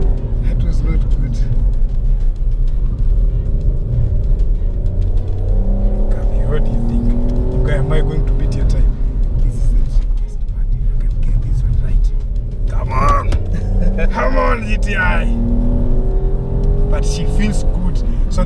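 Peugeot 308 GT Line's engine pulling hard around a race track, its note rising steadily and dropping back with gear changes. Brief voices about thirteen seconds in.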